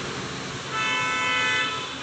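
A vehicle horn honks once, a steady tone held for about a second, starting a little under a second in.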